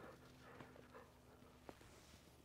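Near silence, with a few faint taps.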